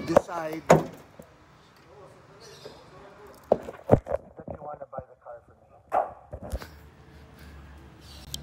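A few knocks and thumps, the loudest and deepest about four seconds in, as the Toyota Innova's hood is handled and shut.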